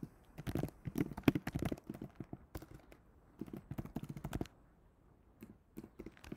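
Typing on a computer keyboard: quick runs of keystrokes that thin out after about four and a half seconds.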